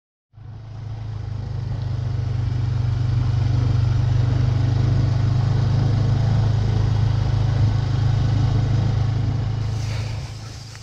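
ATV engine running at a steady speed while the four-wheeler drives across grass, heard from its front rack. It fades in over the first two or three seconds and eases off near the end.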